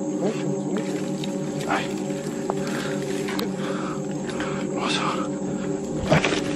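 A low, steady droning music bed of the kind laid under a horror scene, with brief rustles about two seconds in and again near five seconds.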